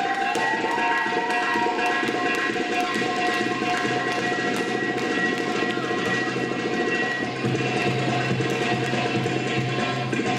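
Recorded tabla (darbuka goblet drum) solo music for a bellydance routine: quick hand-drum strokes over long held melodic notes.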